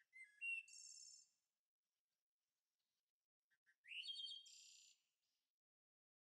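Faint songbird singing two short high-pitched phrases, each ending in a trill: one right at the start and another about four seconds in.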